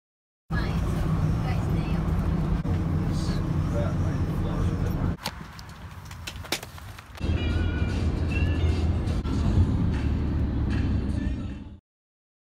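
Wind rumbling on a phone microphone outdoors, with indistinct voices mixed in. It eases off for a couple of seconds in the middle, where a few sharp clicks stand out, then comes back and cuts off abruptly near the end.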